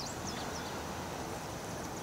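Steady low background noise with a few brief bird chirps right at the start.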